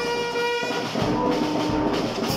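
Small brass band of trumpets, saxophone and lower brass with drums, playing long held notes. The first note stops just under a second in. A lower note is then held to near the end, with soft bass-drum strokes beneath it.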